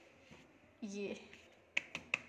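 Two sharp, short taps near the end as hands pat and press thin rolled dough down on a wooden rolling board.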